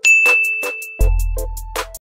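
A single bright notification-bell ding right at the start, ringing on for about a second before fading. It plays over background music with a steady beat, whose bass comes back in about a second in.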